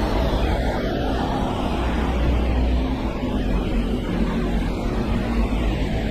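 Steady rain falling on an umbrella held overhead and on wet pavement, mixed with city traffic on wet roads and a low rumble.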